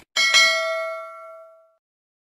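Notification-bell sound effect from a subscribe-button animation. A short mouse click is followed by a bright bell ding struck twice in quick succession. The ding rings on and fades out over about a second and a half.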